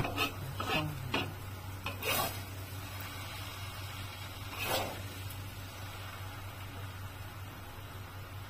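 A metal spatula stirring and scraping fried rice vermicelli in a wok, in a handful of separate strokes over a low sizzle, with a sharp knock of metal right at the start. A steady low hum runs underneath.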